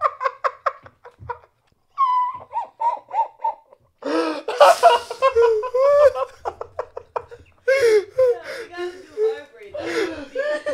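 Two men laughing hard in repeated bursts, one laugh running high-pitched about two seconds in, right after one of them has taken a jolt from a shock collar.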